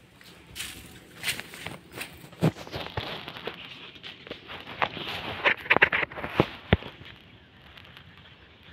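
Footsteps and rustling through a banana plantation's dry leaf litter and foliage: irregular crackles and snaps, busiest in the second half, with one sharp snap near the end.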